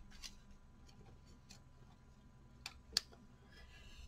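Quiet hand-sewing handling: a few faint clicks, then two small ticks near the end, the second the sharper, as a needle and thread are worked through a fabric cluster.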